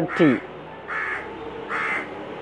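A crow cawing twice: two short calls a little under a second apart.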